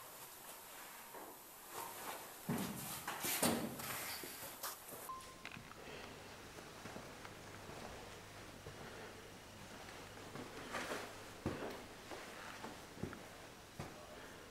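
Faint footsteps and scattered small knocks of someone moving about in a quiet room, with a low steady hum starting about five seconds in.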